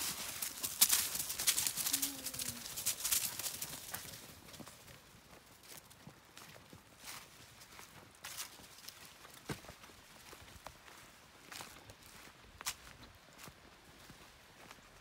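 Footsteps and dog paws crunching through dry fallen leaves: dense and loud for about the first four seconds, then fainter, scattered crunches.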